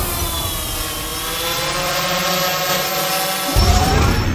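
Intro sting sound design: a dense propeller-like buzzing whir that sinks slowly in pitch, then a deep boom with a rising sweep about three and a half seconds in.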